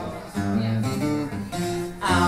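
Acoustic guitar strumming a few chords, with the chord changing roughly every half second.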